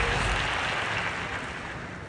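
Audience applause in a large hall, dying away.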